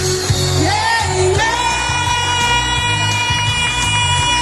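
Amplified live dance-band music with a steady bass beat. A long held note enters about a second and a half in and carries on.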